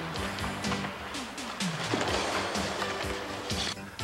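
Background music with sustained notes and a few short percussive hits.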